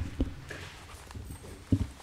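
Scattered knocks and light rustling in a hearing room: a faint knock just after the start, then a louder double thump near the end.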